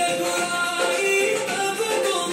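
Recorded Hindi devotional song: a solo voice singing long, wavering held notes over steady instrumental backing.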